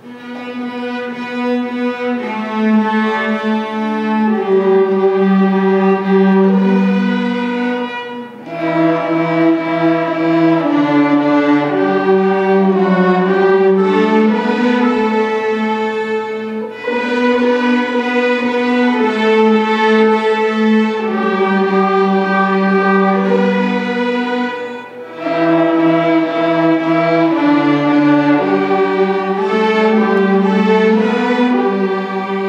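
A string orchestra of violins, violas, cellos and double basses playing a piece. The music begins at once and moves in phrases, each ending in a brief dip about every eight seconds.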